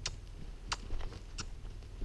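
Footsteps crunching on a sandy arena floor at a steady walking pace, one sharp crunch about every two-thirds of a second.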